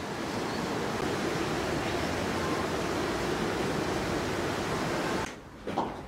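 Steady rushing background noise with no distinct events, cutting off abruptly about five seconds in.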